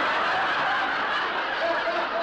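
Studio audience laughing, a loud, sustained laugh.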